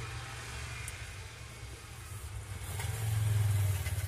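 A motor vehicle engine running at idle, a steady low rumble that grows louder about three seconds in.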